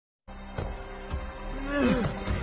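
Film soundtrack: a low music drone with two deep thumps, then near the end a loud, deep growling groan from an animated animal fighter that rises and falls in pitch.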